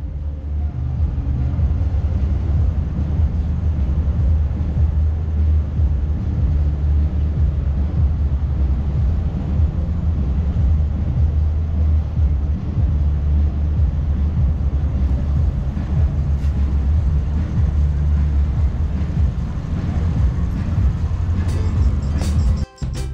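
Loud, steady low rumble of city street traffic.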